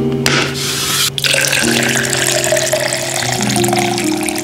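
Water poured from a pitcher into a plastic shaker bottle, the pitch of the stream rising as the bottle fills, after a short rush of noise near the start; background music plays throughout.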